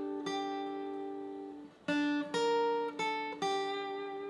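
Steel-string acoustic guitar playing a slow single-note lead phrase: plucked notes ring out, and one note slides down a step on the string. The phrase fades and begins again about two seconds in.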